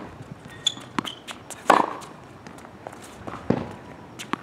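Tennis ball being hit back and forth with rackets in a rally, two loud strikes about two seconds apart, with lighter taps of ball bounces and quick footsteps on a hard court between them.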